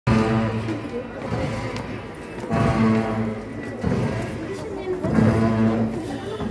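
Tibetan Buddhist monastic ritual music accompanying a masked cham dance: long, steady low notes held for about a second and repeating about every two and a half seconds.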